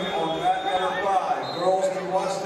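Raised voices of spectators and coaches calling out in a large gym hall, with a faint steady high whine behind them.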